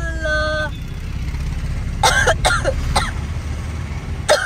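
Steady low rumble of a moving vehicle. At the start a person gives a drawn-out vocal sound that falls in pitch and then holds, and about two seconds in come a few short vocal bursts.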